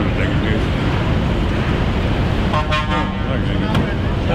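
A vehicle horn gives one short, flat toot a little past halfway, over a steady low rumble of engines and traffic.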